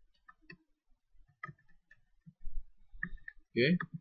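Computer keyboard keys clicking in a scattered handful of light taps as a short label is typed, then a mouse click.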